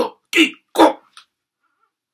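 A man's voice making three short, loud non-word vocal bursts in quick succession within the first second, each louder than the last, with a brief faint fourth one just after.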